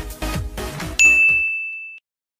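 Background music with a steady beat. About a second in, a single bright notification-bell ding sounds and rings away as the music fades out.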